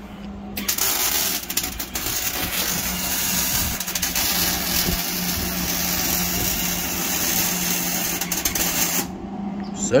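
Electric arc welding on steel reinforcement plates under a car: a steady crackling sizzle starts about half a second in and cuts off about a second before the end.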